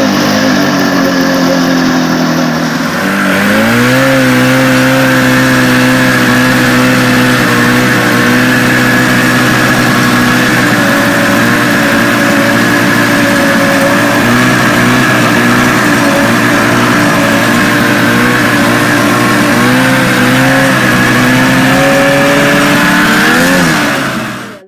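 700 cc snowmobile engine running, rising in pitch about three seconds in as the throttle opens, then holding a steady high pitch with a few brief dips and rises near the end.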